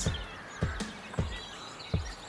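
Quiet outdoor ambience with birds chirping faintly and a few soft, low thumps.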